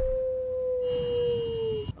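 A single long held tone from the film's soundtrack, steady and then sagging slightly in pitch before it stops shortly before the end.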